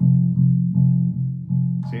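Electric bass guitar playing a run of repeated low plucked notes, re-struck about two or three times a second, fretted near the nut on the E string. These are the notes that climb out of the song's bridge into the chorus, F and G on the E string. A man's voice says a single word near the end.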